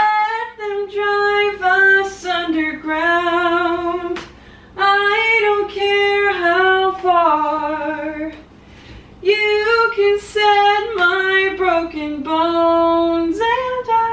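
A woman singing a musical-theatre song unaccompanied, in long held phrases with vibrato, pausing twice for breath.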